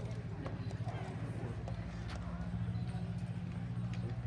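Light, irregular clicks of a plastic ball hockey ball being stickhandled on a plastic sport-tile court, over a steady low hum.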